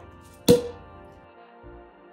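A sparkling wine bottle's cork popping once, sharp and loud, about half a second in, over background music.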